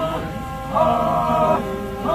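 Group of Chakhesang Naga men chanting together in harmony: long held chords of about three-quarters of a second each, separated by short breaks, with a new chord starting near the end.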